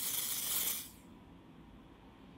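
Dior Airflash aerosol spray foundation can hissing in one continuous spray onto the cheek, cutting off about a second in.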